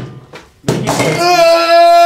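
A heavy chop of a cleaver on a cutting board at the start, another knock a little later, then a man's loud, long held cry on one steady pitch.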